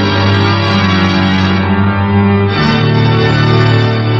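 Music: organ playing long held chords, moving to a new chord about two and a half seconds in.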